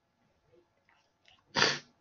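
Near silence, then about a second and a half in a man gives one short, sharp burst of breath and voice lasting a fraction of a second.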